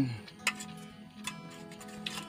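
Metal spoon clinking a few times against a steel bowl while scooping food, the sharpest clink about half a second in. Faint steady background music runs underneath.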